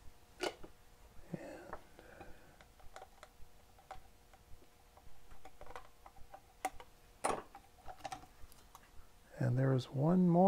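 Scattered small clicks and taps of a circuit board and hand tools being handled in a bench board holder, over a faint steady hum. A man's voice comes in briefly near the end.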